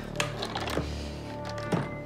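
Soft background music with about three light clicks from a case being handled.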